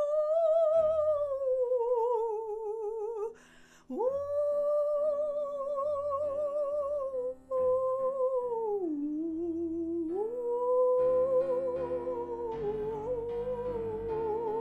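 A woman's voice sings long held notes with a wide vibrato, drifting down and back up in pitch, over soft piano accompaniment. The voice breaks off briefly for breath about three and a half seconds in, and again about seven and a half seconds in.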